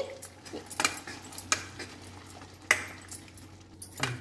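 Metal ladle stirring thick dal in a stainless steel pan: irregular clinks and scrapes of metal on metal, the sharpest knock a little past halfway.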